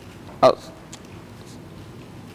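A man's voice: one short spoken syllable about half a second in, in a pause otherwise filled with a low, steady background hiss.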